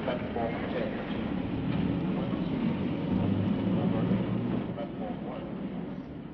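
Radio-play sound effect of a train at a station: a steady rumble that swells in the middle and eases off near the end, with faint voices in the first second.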